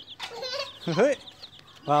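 Baby chicks peeping, a run of short high cheeps, with one louder short rising call about a second in.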